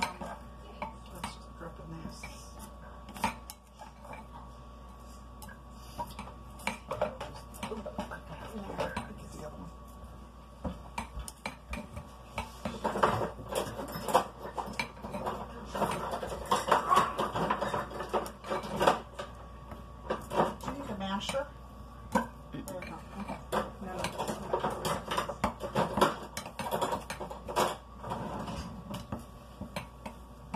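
A utensil stirring powdered sugar and shortening into frosting by hand in a glass bowl, with irregular clinks and taps against the glass. The clinking gets busier and louder about halfway through.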